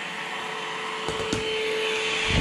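PerySmith Kaden Pro K2 cordless stick vacuum running with a steady whine and rush of air. There are two light knocks about a second in.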